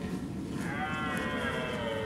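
Red deer stag roaring in the rut, a long drawn-out bellow that wavers and falls in pitch.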